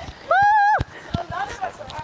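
A person's high-pitched shout, held for about half a second, rising and then level, with quieter voices after it.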